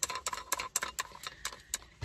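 A desk-clamp phone holder being handled and its clamp screws turned: a quick, irregular run of light clicks and rattles from its metal arm and plastic parts, several a second.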